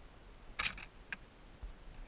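A short, sharp rustle about half a second in, then a fainter click about a second in, from the goshawk shifting its wings and feathers over its kill.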